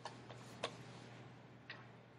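A few light, sharp clicks and taps from paper being shifted on a desk by a hand holding a pen, the third one the loudest. A faint steady low hum runs underneath.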